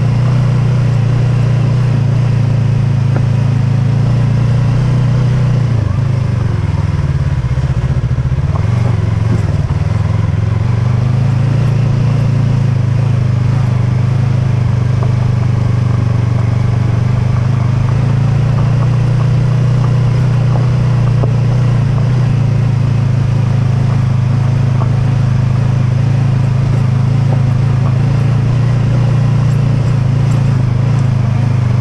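Yamaha YZF-R3's parallel-twin engine running at steady revs under way, over the rumble of tyres on loose gravel. About six seconds in, the engine note drops as the throttle eases off, then climbs back to its earlier pitch by about ten seconds.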